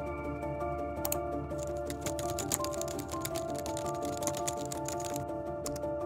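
Typing on a computer keyboard, a rapid run of key clicks from about a second in until about five seconds in, over background music of soft sustained tones.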